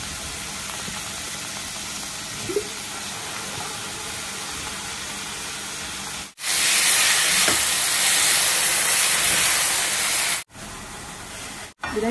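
Food sizzling in hot oil in a steel kadai, a steady hiss. About six seconds in, after a brief break, a much louder, sharper sizzle starts as something is poured from a jar into the pan, and it cuts off suddenly after about four seconds.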